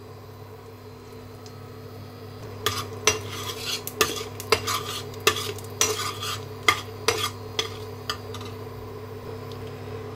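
Whole spices sizzling in butter and oil in a metal kadai over a steady low hum. From about two and a half seconds in, a metal slotted spoon stirs them, scraping and clinking against the pan many times, then the stirring stops near the end.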